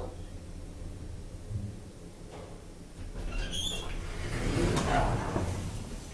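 Schindler 3300 elevator's sliding doors moving: a low hum, then a brief high squeak about halfway through, then a rising rush of door travel that is loudest near the end.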